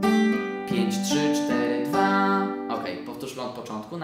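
Steel-string acoustic guitar with a capo, fingerpicked: a bass note, then two strings plucked together, then single strings picked in turn, the notes ringing on. A run of quicker notes about three seconds in fades out near the end.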